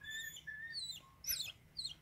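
Birds calling: a few short, level whistled notes, then high, quick downward-sliding chirps in the second half.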